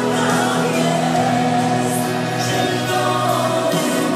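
A choir singing a slow song with musical accompaniment, the notes long and held.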